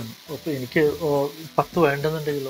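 A person's voice talking, over a faint steady hiss.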